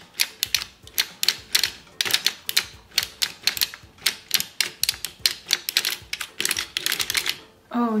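Dean and Bean 2.0 circular sock machine being hand-cranked, its latch needles clicking as the cam drives them up and down to knit the first rows after cast-on. It makes a rapid, typewriter-like run of clicks, about four or five a second, that stops shortly before the end.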